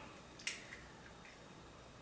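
A clear plastic Invisalign aligner being pressed onto the upper teeth by hand: one short, sharp click about half a second in, then a couple of faint ticks, otherwise quiet.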